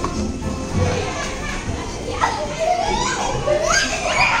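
Young children playing and chattering, their high voices rising into excited calls in the second half.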